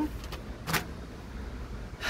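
Steady low rumble of wind on the microphone, with one short rustle of a kraft-paper mailer being handled a little under a second in.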